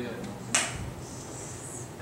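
A single sharp click about half a second in, with a short fading tail, over quiet room tone.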